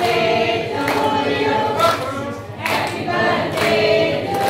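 A group of people singing a song together, with hand claps on the beat about once a second.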